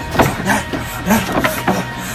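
Background music with a run of quick sudden hit and swish sound effects, several strokes a second.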